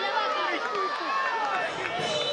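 Many voices of players and onlookers at a football match calling and shouting over one another.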